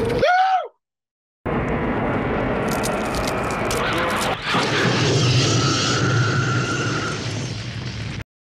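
Horror film soundtrack from the creature-in-the-kennel scene. A creature shriek bends in pitch and is cut off abruptly. After a short gap comes a dense, loud roar of flamethrower fire with a long held screech over it.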